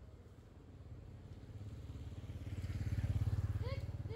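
A motorcycle engine running, getting louder to a peak about three seconds in and then easing off, as if passing close by. Brief voices come in near the end.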